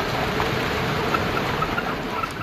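Four-wheel-drive vehicle driving on a rocky dirt trail: a steady noise of engine and tyres crunching over gravel.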